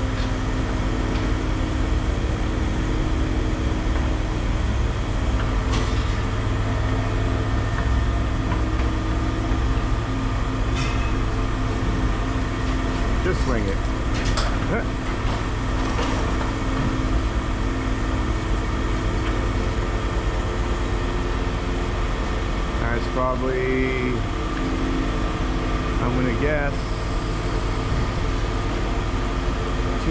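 Heavy scrapyard machinery with diesel engines running steadily at a constant pitch, with a few brief rising and falling whines.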